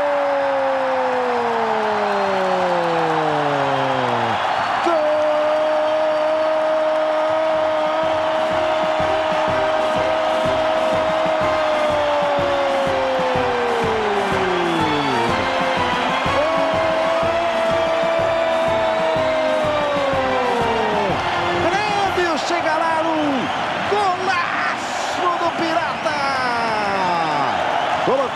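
A Brazilian football commentator's long, drawn-out goal cry ("goool"), one voice held on a single pitch for several seconds at a time and sliding down at the end of each breath, repeated several times over stadium crowd noise.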